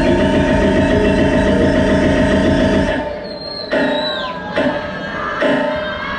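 Progressive trance from a DJ set playing loud: held synth chords over a steady beat and bass. About halfway through the kick and bass drop away into a breakdown, with a synth sweep falling in pitch and short chord stabs.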